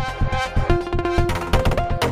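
Melodic techno sequence played on the VPS Avenger software synthesizer: a synth melody stepping between a few notes over a fast, even drum pattern.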